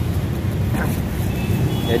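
Road traffic on a busy multi-lane city street: a steady low rumble of passing cars and motorbikes.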